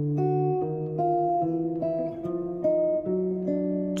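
Archtop guitar playing two-note intervals in chromatic contrary motion, one line stepping up by half steps while the other steps down. Each pair is let ring, with a new pair of notes about every half second.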